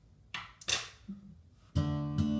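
Acoustic guitar: a couple of short, light strokes across the strings, then a full chord strummed near the end that rings on.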